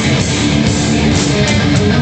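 Heavy metal band playing live, led by loud distorted electric guitar, with no break in the sound.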